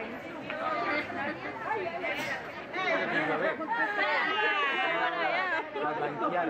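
Several people talking over one another in indistinct chatter, with higher-pitched voices in the second half.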